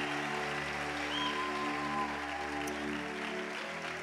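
Congregation applauding while a keyboard holds a soft, sustained chord.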